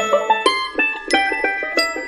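Background music: a light melody of quick, plucked-sounding notes, several a second, with no heavy beat under it.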